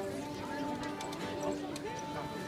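Violin and acoustic guitar street music playing, with long held violin notes over the murmur of a market crowd talking. A few short, sharp clicks come in the middle.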